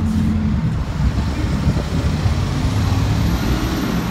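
Street traffic: a steady, loud low engine sound with road noise from passing vehicles.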